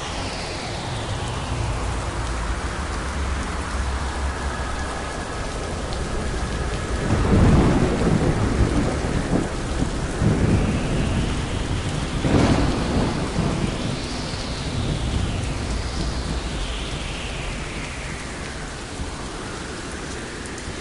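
Steady rain with rolls of thunder, the loudest about seven and a half, ten and a half and twelve and a half seconds in. Faint whooshes glide up and down in pitch several times over the rain.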